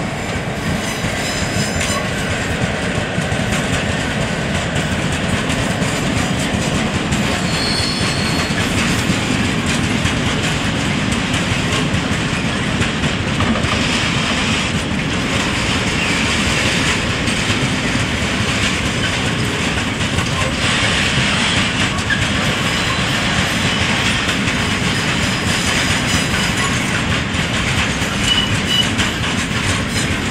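Freight train of loaded open-top wagons rolling past behind an electric locomotive: a steady, loud rumble and clatter of wheels on the rails. A short high squeal comes about eight seconds in.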